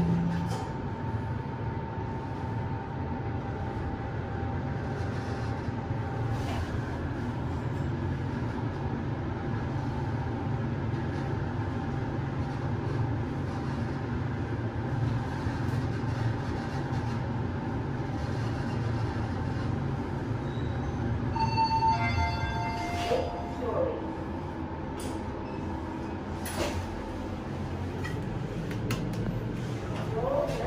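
Toshiba Elcosmo-III MR machine-room-less passenger lift travelling upward at its 90 m/min rated speed: a steady low running rumble inside the car with a faint whine early on. About two-thirds of the way through the car slows and stops, and a short electronic arrival chime sounds.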